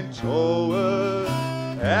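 Song: a singer holds one long note over guitar and a steady bass line.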